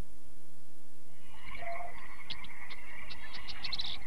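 Wildlife ambience of frogs calling and insects chirring, coming in about a second in with high rapid ticks that grow busier toward the end.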